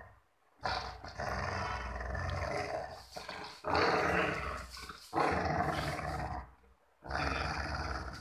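Golden retriever play-growling while tugging on a rope toy: four long growls of one to two seconds each with short breaks between. The growling is playful, part of a tug-of-war game, not aggression.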